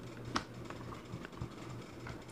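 Hard plastic back shell of a SUPCASE Unicorn Beetle phone case being pressed onto an iPhone 6 Plus, giving one sharp click about a third of a second in, then a few faint plastic ticks.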